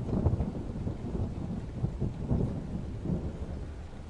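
A low, uneven rumble.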